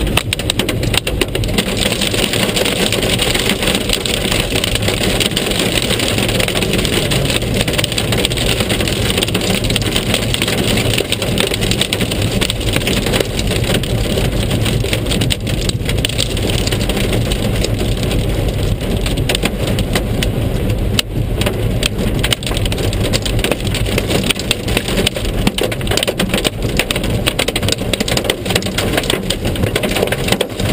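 Heavy storm rain beating densely on a car's roof and windscreen, heard from inside the cabin over the steady rumble of the car's engine and tyres on the wet road.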